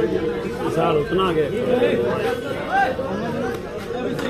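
Several people talking at once in loose, overlapping chatter, no single voice carrying clear words.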